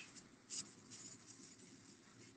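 Near silence: faint room tone, with one brief faint noise about half a second in.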